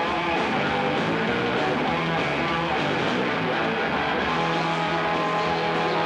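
Live rock band playing, with electric guitars over bass and drums.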